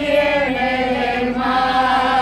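Small village folk choir singing together, the voices stepping to a new pitch about half a second in and then holding a long note.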